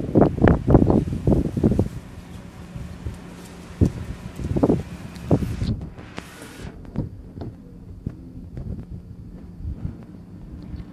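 Wind buffeting the microphone in strong gusts for the first two seconds, then scattered footsteps and another gust about six seconds in, over a steady low hum.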